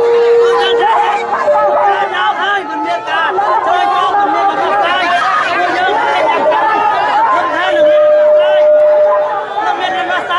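Crowd of many people talking at once, a dense babble of close voices, with a held, drawn-out tone at the start and again near the end.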